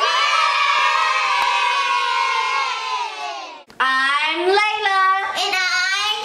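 A group of children shouting together in one long held cheer that cuts off after about three and a half seconds, followed by children's voices rising and falling in pitch.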